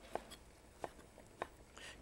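A knife cutting dried figs into large pieces on a plate, heard as a few faint, light clicks, about four in two seconds.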